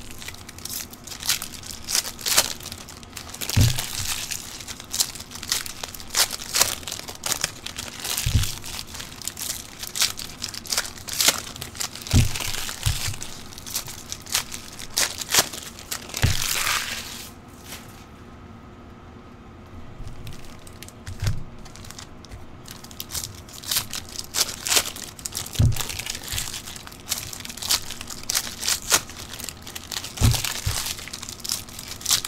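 Trading-card pack wrappers being torn open and crinkled, with dense sharp crackles and a few low thumps as boxes and cards are handled. There is a quieter lull of a few seconds just past the middle.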